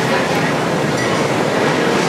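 Steady din of a busy open-front noodle shop: a constant roar with background voices mixed in, and a light metallic clink about a second in.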